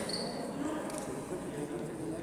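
Low background noise of a gymnasium with faint, indistinct voices, during a stoppage in play.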